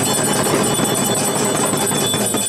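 Bells ringing rapidly and continuously in a dense, steady clangour, as at a Hindu temple aarti.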